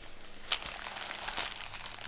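Plastic protective film on a diamond painting canvas crinkling as the canvas is handled and flattened. It gives irregular crackles, the sharpest about half a second in.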